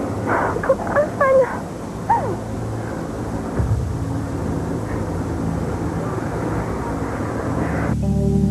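A woman moaning and gasping in pain, several short falling cries in the first couple of seconds, over a steady low drone.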